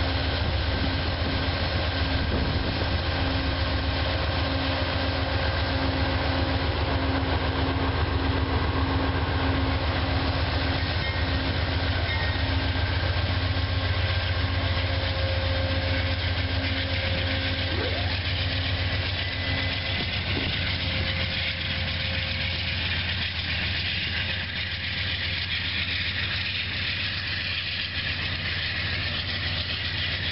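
GE Genesis P40DC diesel locomotive running steadily at close range, a deep engine drone with a pulsing whine over it. About two-thirds of the way through the whine stops and the sound eases a little as the locomotive draws away.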